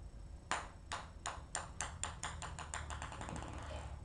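A ping pong ball dropped onto a hard floor, bouncing with quicker and quicker, fainter clicks until it settles near the end.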